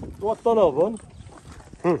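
Speech: a voice talking in short phrases, with a brief quieter pause in the middle.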